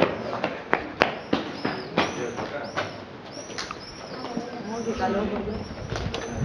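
A run of sharp taps, about three a second over the first three seconds, with small birds chirping high overhead and voices murmuring in the background.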